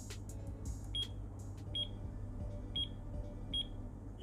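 Digital alarm clock giving four short, high, single-pitch beeps about a second apart as its buttons are pressed to set the alarm, with small plastic button clicks in the first second or so. Background music plays underneath.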